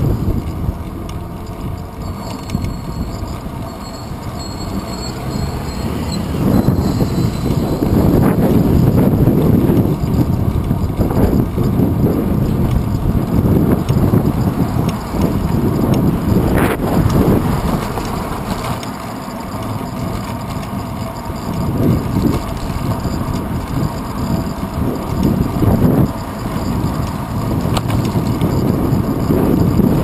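Wind buffeting the microphone of a bike-mounted GoPro Hero 2 as the bicycle rides along, with rumbling road noise that swells and eases. There is a single sharp knock about halfway through.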